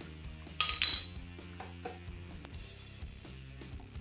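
A sharp metallic clink with a short ringing tail just under a second in, then a few light taps of metal on metal: a hand tool knocking against a small metal sensor bracket. Soft background music plays underneath.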